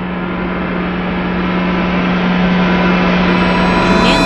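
A steady rushing drone with a low hum running through it, growing gradually louder: a dramatic sound effect laid over the picture.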